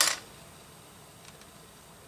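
Loose plastic LEGO pieces clattering briefly as a hand moves them on the table, then quiet room tone with one faint tick.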